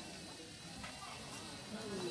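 Faint background chatter of voices in a room, with a single light click a little under a second in.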